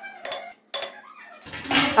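Metal spoon scraping and lightly clinking against the side of an aluminium cooking pot while stirring rice into simmering meat stock. A woman starts speaking near the end.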